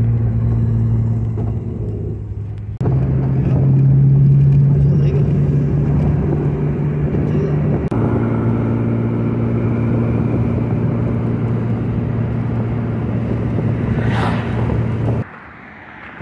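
Steady engine and road hum heard inside a moving car, in several spliced stretches that cut abruptly from one to the next. The hum is higher in pitch in the stretch from about three seconds to eight seconds in.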